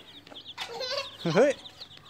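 Baby chicks peeping: a string of short, high, falling cheeps, several a second, thickening into a quick run about a second in.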